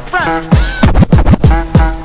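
Turntable scratching: a vinyl record pushed back and forth under the stylus by hand, its pitch sweeping quickly up and down, over a beat with repeated bass-drum hits.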